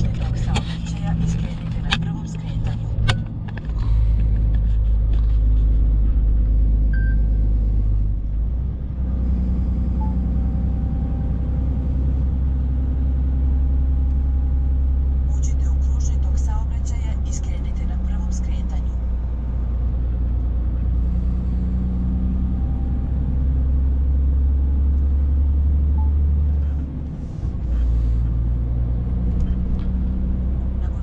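Heavy truck's diesel engine running under way, heard inside the cab as a steady low drone. It grows louder about four seconds in and drops briefly near the end before picking up again.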